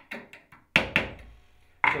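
A steel awl working the paint out of the slot of an old, painted-over hinge screw: a few light scratching ticks, then one sharp knock about three-quarters of a second in.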